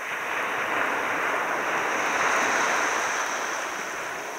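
Surf breaking and washing up the beach, the rush of water swelling about half a second in and easing toward the end. Throughout, a steady high-pitched drone of Kuroiwa tsukutsuku cicadas (Meimuna kuroiwae) sits above the surf.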